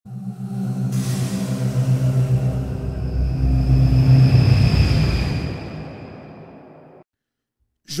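Intro music sting for an animated logo: a sustained low chord with a whoosh swelling in about a second in, fading away over the last few seconds.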